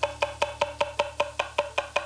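Chef's knife chopping garlic on a wooden cutting board: quick, even strokes about five a second, each with a short woody knock, stopping suddenly at the end.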